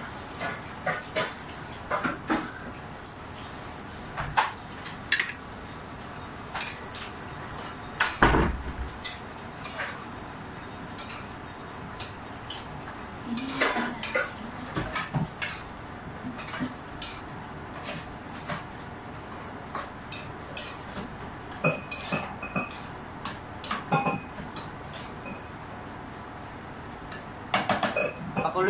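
Metal cooking utensil clinking and knocking against a pan as the sisig is stirred, in irregular taps with one louder knock about eight seconds in.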